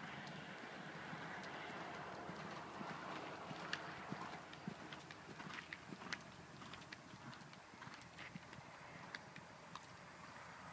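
Hoofbeats of a Thoroughbred horse moving over sand arena footing, faint and irregular, with sharper hoof strikes from about three seconds in, over a steady background hiss.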